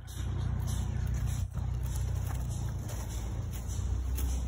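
A car engine idling, a steady low rumble.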